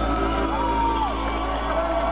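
Live band music from double bass and electric guitar, with whooping shouts rising and falling over it as a held chord fades.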